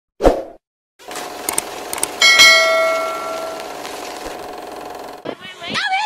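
A single metallic strike about two seconds in, ringing on with several steady bell-like tones that fade over about a second and a half, over a steady background hiss. Voices come in near the end.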